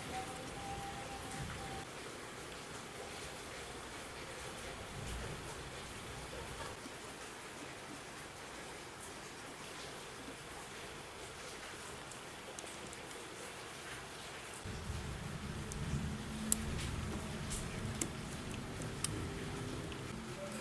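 Faint, steady hiss, rain-like. From about fifteen seconds in a low hum joins it, with a few sharp clicks near the end.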